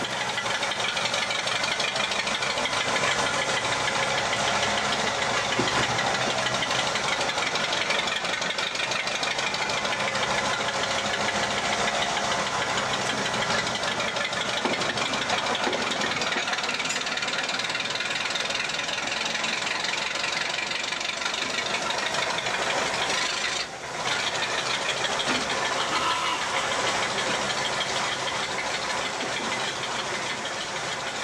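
Diesel engine sound of a Ruston 48DS shunter running steadily as it hauls a van, with a momentary dip in level late on.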